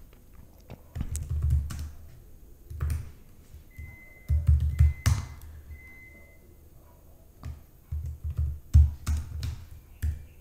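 Typing on a computer keyboard in several short runs of keystrokes, heard mostly as low thuds.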